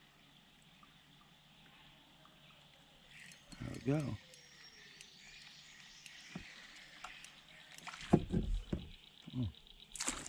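Kayak handling sounds on the water: a few short knocks and splashes against the hull near the end, over a faint steady high hiss.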